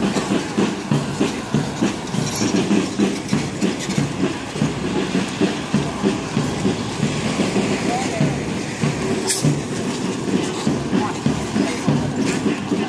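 Parade drums beating a steady march rhythm, about two to three beats a second, with voices under it.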